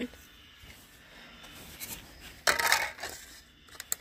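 Plastic handling sounds from a portable DVD player as a disc is put into its disc compartment: a short clattering rustle about two and a half seconds in, then a few sharp clicks near the end.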